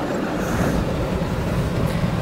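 Steady rumble of a car driving at speed, heard from inside the cabin: tyre, road and engine noise.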